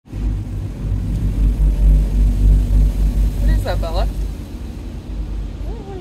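Low, steady rumble heard inside a car cabin in an automatic car wash, loudest for the first four seconds and then easing. A short pitched vocal sound comes about three and a half seconds in.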